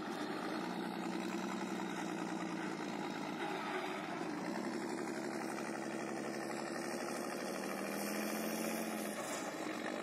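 Vityaz DT-30 tracked carrier's engine running steadily at low revs, its pitch shifting about four and a half seconds in and briefly rising a little near the end.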